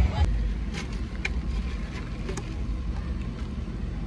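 Steady low rumble inside a car's cabin, with a few light clicks. Wind buffeting the microphone cuts off just after the start.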